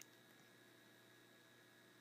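Near silence: a faint steady hiss and hum of background noise, with no distinct sound events.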